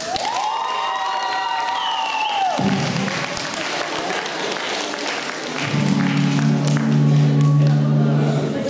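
Audience applauding and cheering over the opening of a pop backing track: a held high note for the first two and a half seconds, then a low sustained chord from about six seconds in.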